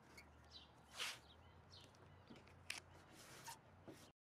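Near silence with a few faint crackles and rustles of painter's tape being torn and pressed onto a paper template, the clearest about a second in.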